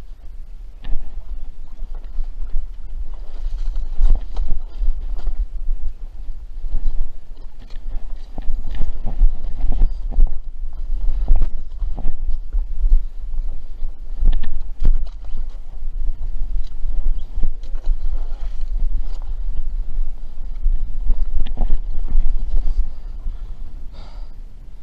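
Footsteps over loose rocks and snow, many irregular knocks and crunches, over a low rumble throughout.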